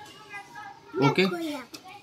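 Speech only: a man says "okay" about a second in, with a small child's voice also heard, over quiet room sound.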